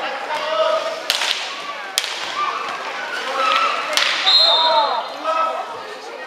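Roller hockey play: three sharp knocks of stick, ball and boards over players' and spectators' shouts, then a short referee's whistle blast about four seconds in.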